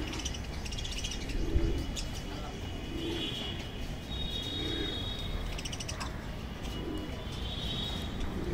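Budgerigars chirping and chattering in short, fast trills, with a lower call repeating every second or two underneath.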